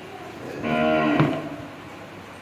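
A cow mooing once, briefly: a short, steady-pitched call lasting under a second, starting about half a second in.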